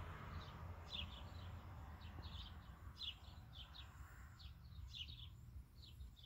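Small bird chirping faintly and repeatedly in short, high, falling notes, often two or three together, over a low background rumble.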